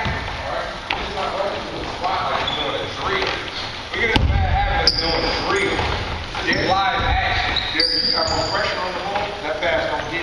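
Basketballs bouncing on a gym court during practice, amid players' and coaches' voices, with a sharp thud about four seconds in.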